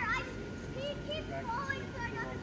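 Children's high-pitched voices calling out and chattering, over a steady low hum.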